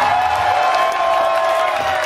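Club crowd cheering and shouting right after a hardcore song ends, over lingering guitar feedback with a steady ringing tone.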